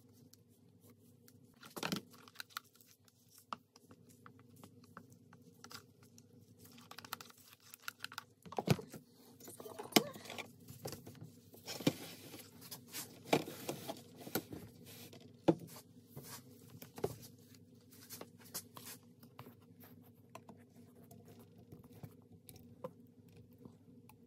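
Soapmaking containers and utensils being handled on a tabletop: scattered light knocks and clicks with some scraping and rustling, busiest in the middle, over a faint steady hum.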